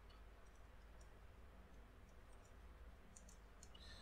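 Near silence: a low steady room hum with a few faint, scattered clicks.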